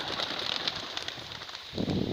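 A flock of young racing pigeons taking off together from their transport basket, a rapid patter of wing claps and flapping. A louder low rumble comes in near the end.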